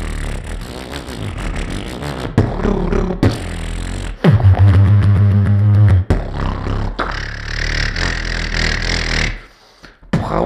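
Solo beatboxing into a cupped handheld microphone: a run of mouth-percussion sounds, then a loud low hummed bass tone held for under two seconds midway, and a long hissing sound near the end that stops abruptly just before a short pause.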